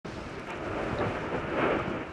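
Lava fountain erupting from a volcanic vent: a steady rushing noise that grows a little louder towards the end.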